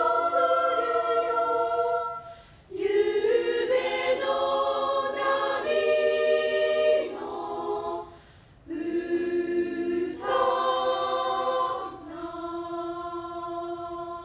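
Unaccompanied three-part girls' choir of twenty-two middle-school singers singing sustained chords in phrases, with short breaks for breath about two and a half and eight seconds in. The last phrase, from about twelve seconds in, is softer and ends on a long held chord.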